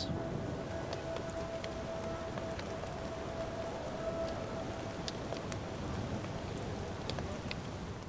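Rain falling on a wet street and puddles: a steady hiss with scattered light drop ticks. A faint steady tone hangs in the background through the first half.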